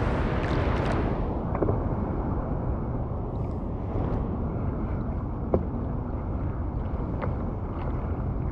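Sea water lapping and sloshing against a surfboard, with a steady low rumble of wind on the microphone. There is a brighter wash of water in the first second and a few small splashes.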